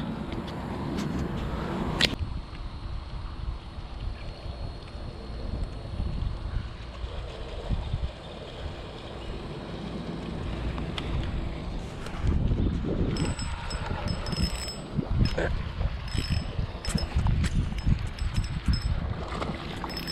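Wind buffeting the microphone as a low rumble, with a sharp click about two seconds in and a run of light ticks in the second half.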